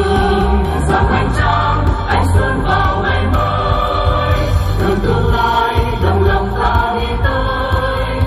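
Amplified stage music with a choir singing held notes over a steady, pulsing bass.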